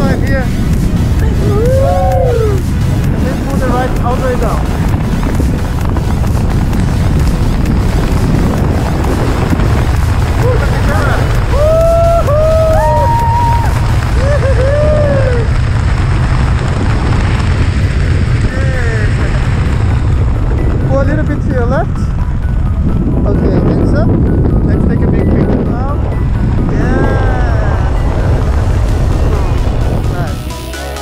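Heavy wind rushing over the camera microphone during a tandem parachute canopy ride, steady throughout, with short rising-and-falling vocal whoops rising over it now and then.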